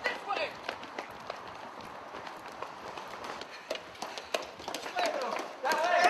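Several people running, their footsteps knocking quickly and unevenly, with shouts at the start and louder yelling in the last second.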